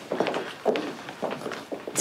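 Footsteps of several people walking on a hard corridor floor, a run of irregular, overlapping steps.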